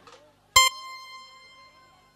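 One high electronic keyboard note struck sharply about half a second in, ringing with several overtones and fading away over about a second and a half.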